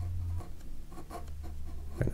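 Uni-ball Ultra Micro fine-tip ink pen scratching across textured Canson watercolour paper as a line is drawn, in several short strokes. A low hum underneath stops about half a second in.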